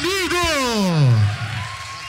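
Beatboxer's pitched vocal sound through the microphone and PA: two short pulses, then one long slide down in pitch lasting about a second that closes the routine.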